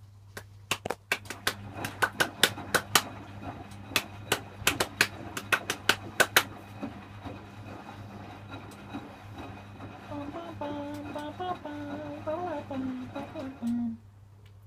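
Zanussi EW800 front-loading washing machine running a rinse with a steady low hum. For about the first six seconds there is a rapid, irregular run of loud sharp clicks. Near the end a voice hums a short wavering tune.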